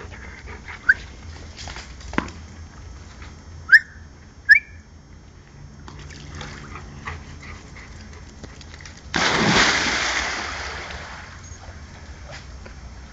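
A big splash as a black Labrador jumps into a swimming pool after a ball, starting suddenly about nine seconds in and washing away over about two seconds. Earlier, two short rising whistle-like chirps.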